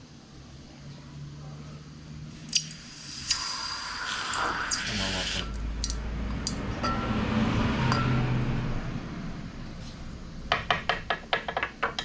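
Hot, freshly cast silver quenched in a bowl of water, hissing and sizzling for about three seconds starting around two seconds in. Near the end comes a quick run of light metallic clicks.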